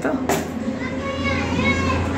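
Voices talking, including a child's voice, over a steady low hum.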